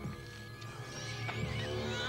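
Horror-film soundtrack: sustained score music, joined about a second in by a wavering high cry that bends up and down in pitch.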